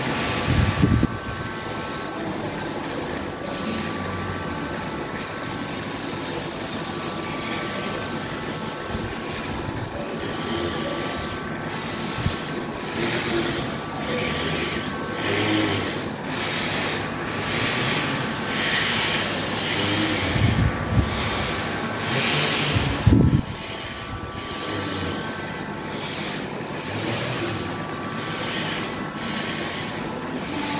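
Rhythmic breathing through the nose during pranayama, with one nostril closed by the hand: hissing breaths about once a second, over a steady hum and room rumble. A louder rush with a low thump about three quarters of the way through.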